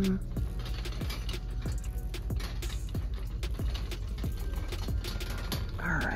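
A plastic shopping cart rattling, with quick irregular clicks as it is pushed along a store aisle, over background music.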